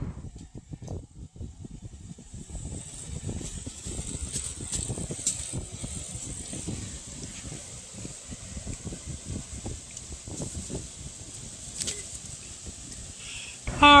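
Electric box fan running on a raised speed setting, its airflow buffeting the microphone with an uneven low rumble. A faint, steady high-pitched whine runs under it.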